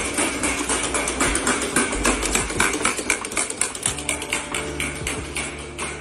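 Background music with a fast, busy percussive beat.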